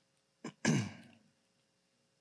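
A man clearing his throat: a short catch about half a second in, then a longer, louder rasp.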